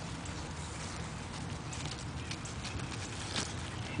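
Quiet outdoor background: a steady low hum under a faint hiss, with a few faint clicks and ticks scattered through it.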